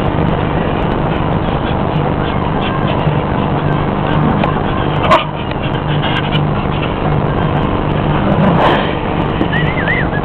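A steady motor drone with a low hum that runs without a break, with a sharp click about five seconds in and a short rising squeal near the end.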